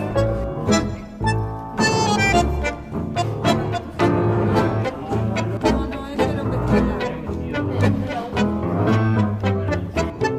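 Instrumental tango played by a quartet, bowed strings over a bass line, with crisp, strongly accented notes.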